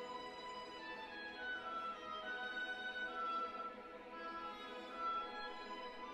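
Symphony orchestra playing a quiet passage: a high string melody in long held notes over soft accompaniment, with the low instruments silent.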